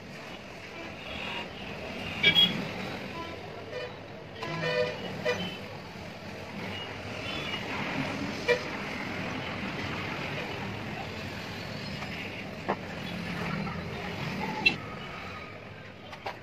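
Occasional sharp clicks and taps of a screwdriver and screws against the laptop's metal drive bay as a 2.5-inch SATA SSD is screwed in, the loudest about two seconds in and a short run of ticks near five seconds, over a steady background noise.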